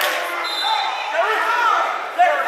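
A basketball bounces once sharply on the gym floor, then voices of players and spectators carry on in the large gymnasium, with a brief high squeak about half a second in.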